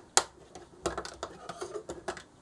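Plastic Polydron Frameworks pieces clicking against each other as a hinged net is folded up into a cube: one sharp click just after the start, then a run of lighter clicks and rattles.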